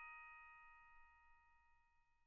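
The last chime-like note of the background music rings on and fades away to near silence.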